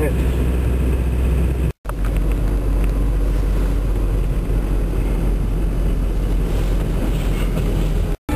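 Car driving, heard from inside the cabin: a steady low engine and road rumble, cut off by a brief gap of silence a little under two seconds in.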